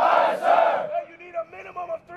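A large group of recruits shouting a response together in unison, loud and lasting about a second, followed by a single male voice barking rapid commands.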